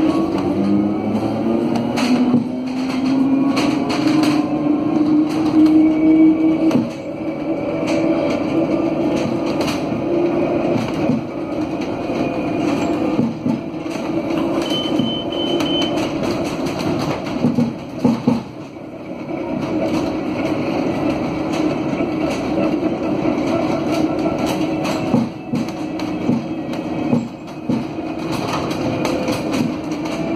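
Inside the cabin of an Alstom Aptis electric bus, its rear-wheel hub traction motors whine as the bus pulls away, the pitch rising over the first few seconds and then holding steady while it drives. Knocks and rattles from the cabin come and go throughout.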